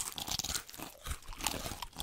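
Irregular, crisp crunching and chewing, like someone munching crunchy snack food.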